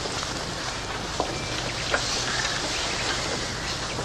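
Steady hiss with a couple of faint clicks, the background noise of an old television recording's soundtrack between lines of dialogue.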